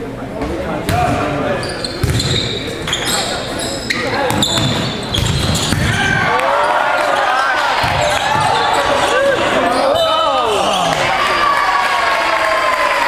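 Volleyball rally in a reverberant gym: sharp slaps of the ball being served and passed, with short sneaker squeaks on the hardwood floor. From about six seconds in, several voices shout and cheer over one another.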